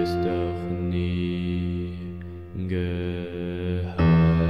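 Slow piano chords ringing out over a steady low sustained tone, with a new chord struck about two and a half seconds in.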